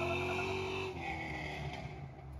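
LS-swapped 1979 Oldsmobile Cutlass's 4.8-litre V8 pulling away under throttle, its exhaust note fading steadily as the car recedes down the road. The note drops about a second in.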